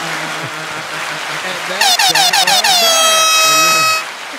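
Air-horn sound-effect drop, the kind DJs use: about six quick falling blasts beginning a little before halfway, then one long held blast that cuts off suddenly.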